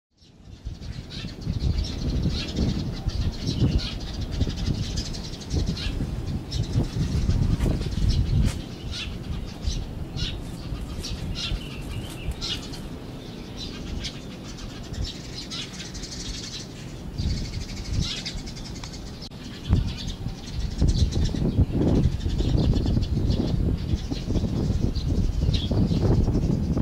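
Many small birds chirping in short, rapid calls throughout, over a steady low rumble.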